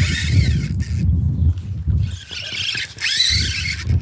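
Wind rumbling on the camera microphone, with handling noise from a spinning rod and reel fighting a running jack crevalle. A brief high squeal comes at the start and again about three seconds in.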